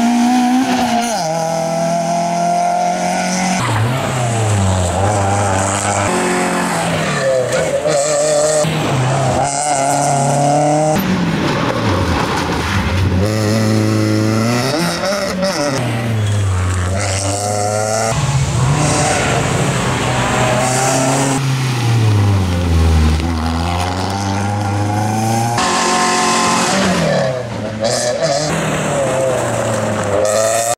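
Citroën C2 rally car's engine revving hard and dropping back again and again, rising in pitch through the gears and falling off for tight tarmac corners. The sound breaks off abruptly a few times where different passes are cut together.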